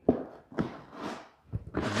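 Cardboard boxes being shifted and set down on a perforated steel welding table: a thump right at the start and another about half a second in, then cardboard scraping and rustling as a box is slid across the table.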